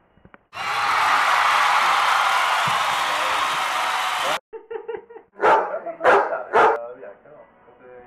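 A loud, steady hiss for about four seconds that cuts off abruptly, followed a second later by a dog barking three times in quick succession.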